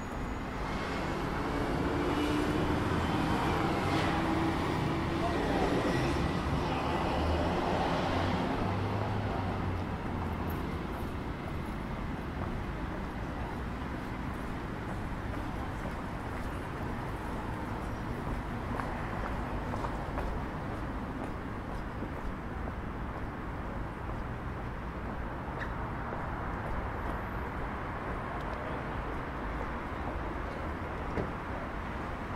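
Street traffic on wet roads: a vehicle passes close by, swelling and fading over the first ten seconds or so, then a steady background of traffic noise.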